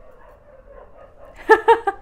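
A dog giving three quick, high barks in a row near the end.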